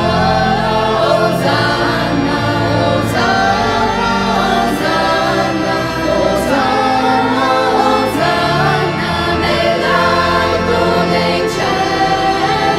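Choir singing an Italian church hymn over instrumental accompaniment, with a light regular beat about every second and a half.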